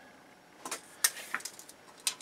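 Light clicks and a brief scrape as a tape measure is handled against a bare aluminum chassis, with a sharper click about a second in.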